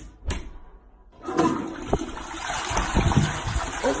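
A couple of short clicks, then from about a second in a toilet flushing: a loud, steady rush of water.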